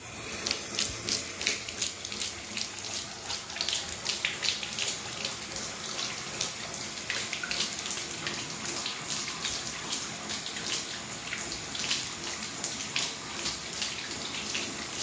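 Bathtub tap water comes on suddenly and runs steadily into the tub, while a Gordon Setter laps from the falling stream, splashing about three times a second.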